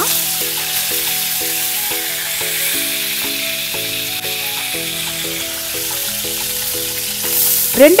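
Curry leaves and garlic sizzling in hot sunflower oil in a steel kadai, a steady hiss. Soft background music with held notes runs underneath.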